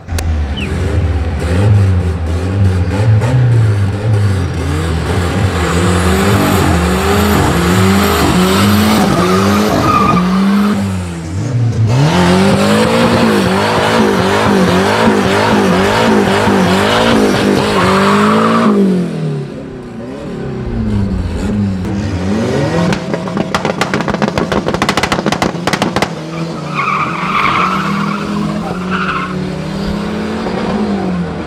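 Drag-racing car engines revving hard, the pitch climbing and dropping again and again. A rear tire spins in a smoky burnout with tire squeal. About two-thirds of the way through there is a rapid run of sharp crackles.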